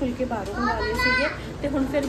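Speech: a woman talking, with young children's high-pitched voices and play noise in the background.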